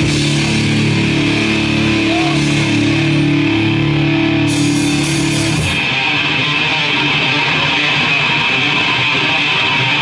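Thrash metal band playing live, with loud distorted electric guitars: held, ringing chords for the first five seconds or so, then the band breaks into a dense, steady riff.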